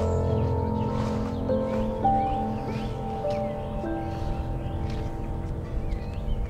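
Background music of slow, held chords that shift every second or so.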